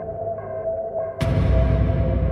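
Psytrance music: a held synth tone with a short note pattern repeating about twice a second. A little over a second in, it breaks into a sudden crash as the heavy bass comes back in and the track gets louder.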